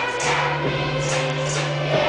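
A large children's choir singing a traditional song with a string orchestra accompanying, over a regular beat about twice a second.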